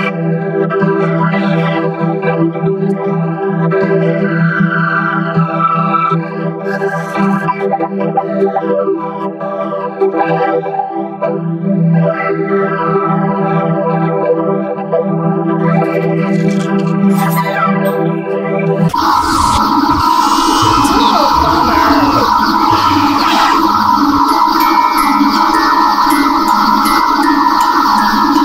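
Heavily effects-processed audio: a sustained, organ-like drone of stacked tones with a sweeping phaser-like swirl, which switches abruptly about 19 seconds in to a louder, denser distorted sound with some pitch glides.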